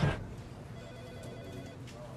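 Quiet office ambience with a telephone ringing faintly in the background, its electronic ring heard as a thin broken tone.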